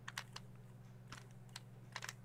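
Rubik's Cube faces being turned by hand: a faint run of short plastic clicks and clacks as the layers rotate and snap into place, in small irregular groups.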